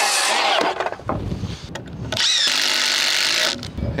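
A Milwaukee M18 FUEL cordless circular saw cutting 2x6 lumber in two passes: a short cut at the start and a longer one from about two seconds in.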